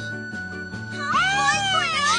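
Children's cartoon background music with a steady repeating bass line, and about a second in a high, wavering, cat-like wail from a cartoon character's voice rises over it.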